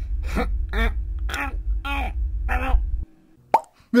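A cartoon character laughing in short, separate bursts over a low rumble. The rumble cuts off suddenly about three seconds in, and a brief rising blip follows.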